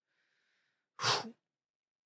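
A man's single short, sharp burst of breath about a second in, lasting well under half a second.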